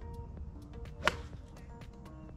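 A golf club striking a ball off the fairway turf: one sharp crack about a second in.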